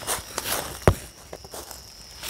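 Footsteps and rustling in dry leaf litter as a person climbs through a barbed-wire fence, with a sharp crack a little under a second in. Crickets chirp faintly with a steady high tone behind.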